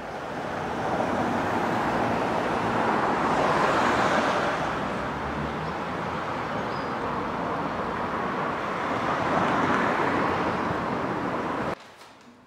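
Street traffic noise: a steady wash of road noise that swells twice as cars pass, then cuts off suddenly near the end.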